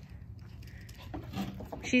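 A quiet lull of faint background rumble with a few soft, faint ticks and rustles past the middle. A woman's voice starts right at the end.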